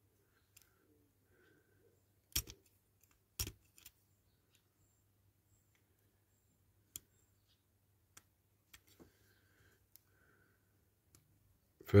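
A small screwdriver clicking and scraping against the painted shell of a toy model car while it prises at the parts inside. There are two louder clicks about a second apart a couple of seconds in, then scattered faint ticks.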